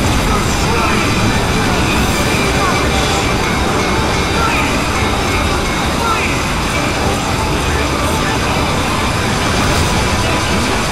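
A loud, steady jumble of many overlapping video soundtracks, mostly dense noise with voices faintly buried in it.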